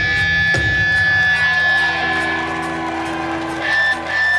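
Live rock band holding a final chord: electric guitar and bass ringing out under a steady high tone, with a drum hit near the end.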